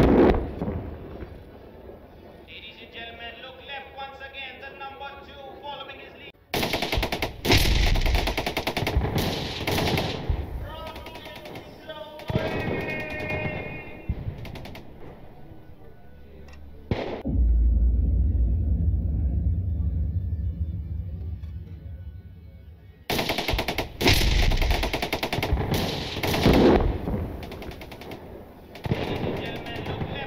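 Live-fire weapons on a bombing range: a sharp blast at the start, then two long stretches of rapid gunfire-like cracks, with a loud low rumble lasting several seconds between them. Voices are heard in the quieter gaps.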